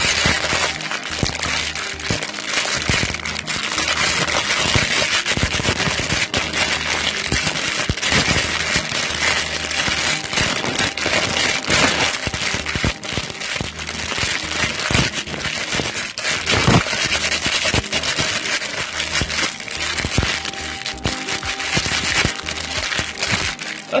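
Crinkly plastic toy packaging crumpled and crackled for ASMR: a continuous dense crackling full of sharp clicks, with background music underneath.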